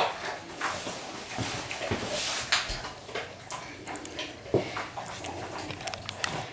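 A Rottweiler eating from a stainless steel bowl on the floor: irregular chewing and mouthing of the food, with short knocks as its muzzle works in the metal bowl.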